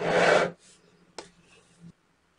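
Tubes of small neodymium magnet balls (buckyballs) scraping across a tabletop as a hand slides them, a loud rasping slide lasting about half a second, followed by a single click a little after a second in.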